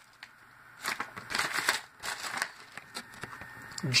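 Crinkling and crackling of a snack-chip bag being handled, in irregular bursts for about a second and a half, then briefly again near the end.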